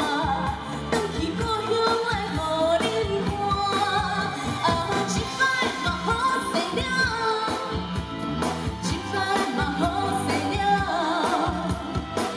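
A woman singing a pop song into a microphone, amplified over backing music with a steady beat.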